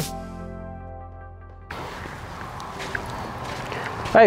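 Background music with held notes dying away, then about two seconds in a sudden cut to steady outdoor background noise with a few faint ticks.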